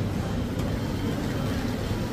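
Supermarket background noise: a steady low rumble with faint shoppers' voices mixed in.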